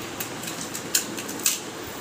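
A few short sharp clicks over steady room noise, the two loudest about a second and a second and a half in.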